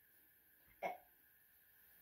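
Near silence, broken once, about a second in, by a single short vocal sound.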